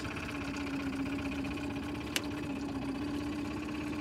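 Outboard motor idling with a steady hum, and a single sharp click about two seconds in.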